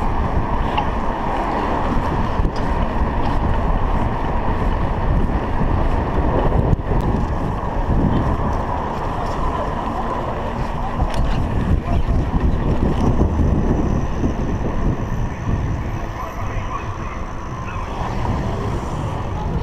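Steady wind rush on a GoPro Hero 3 action camera's microphone while cycling along a road, heaviest in the low end, easing a little near the end.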